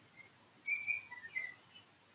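A bird chirping faintly: a few short, high notes, mostly in a quick cluster from just over half a second in.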